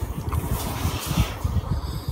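Close-miked chewing of crunchy sour green mango with the mouth closed: a quick run of dull, low crunches, about four a second, with a brief hiss about halfway.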